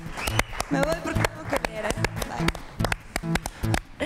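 A few people clapping, with music and voices over it.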